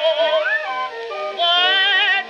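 Acoustic-era 78 rpm record playing on a turntable: a contralto singing a blues with wide vibrato over a small orchestra. The sound is narrow and mid-heavy, with little bass or treble.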